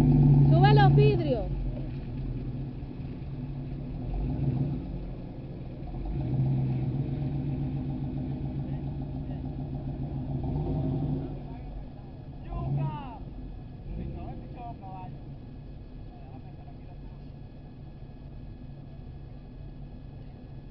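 A 4x4's engine running in a shallow river crossing, revving hard at the start and again from about six to eleven seconds, then settling to a quieter steady run. Voices call out briefly near the start and about thirteen seconds in.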